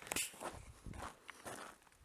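Footsteps on a gravelly, stony mountain path: several uneven steps while walking downhill.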